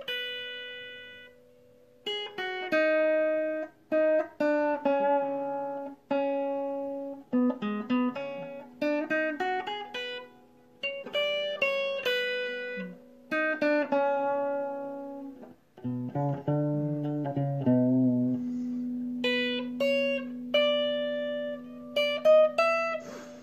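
Clean electric guitar, a sunburst Fender Stratocaster-style, playing single-note phrases from the A minor blues scale in second position, each note picked and left ringing, for a bluesy sound. After a brief pause about two seconds in, the notes run on steadily and end on a long held low note.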